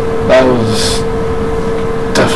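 A man's short vocal sound, then a brief breathy hiss, over a steady high-pitched electronic hum that runs throughout.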